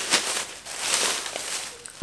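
Shopping bag and packaging rustling and crinkling as they are rummaged through, uneven, with a few sharp clicks.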